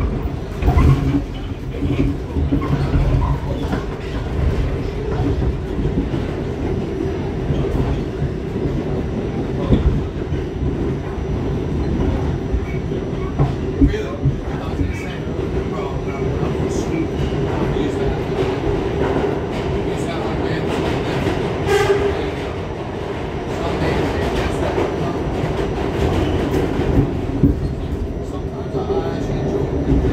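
An R68 New York subway car running at speed through a tunnel, heard from inside the car: a loud, steady rumble of wheels on rail with occasional sharp clicks and knocks. Near the end the train runs into a station.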